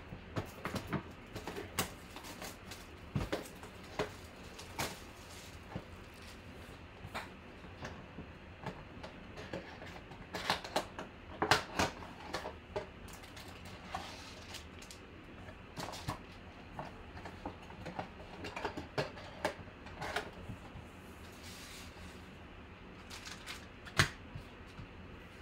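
A cardboard trading-card mega box being opened by hand and its packs taken out: irregular clicks, taps and rustles of cardboard and wrapped packs, busiest about ten to thirteen seconds in.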